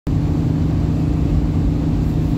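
Vehicle cabin noise while driving at road speed: a steady low engine and road rumble with a constant hum.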